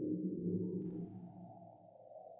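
Electroacoustic live-electronics music made with Csound and Max/MSP: a low, dense drone with a steady hum under it. It fades away from about a second in while a higher, hazier layer rises.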